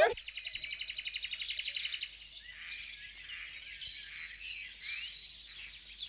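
Birds calling: a rapid, high trill for the first two seconds, followed by scattered short chirps and whistles.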